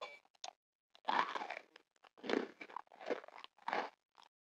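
Close-miked mouth biting into a pink candy, then chewing it: a short bite sound near the start, followed by four chewing bursts about three quarters of a second apart.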